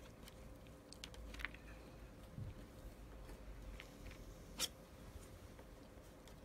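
Faint, scattered ticks and light taps of a palette knife working oil paint on a palette while mixing in white, with one sharper click about four and a half seconds in.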